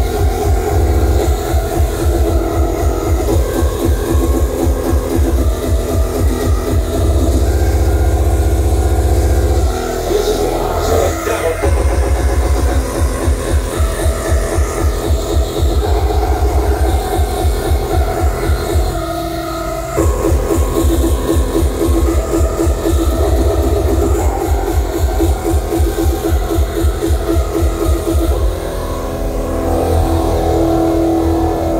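Terror-style hardcore techno played loud over a festival sound system, with a fast, relentless kick drum pattern. A held bass note replaces the kicks for a few seconds about a quarter of the way in, and the beat drops out briefly about two-thirds of the way through before slamming back.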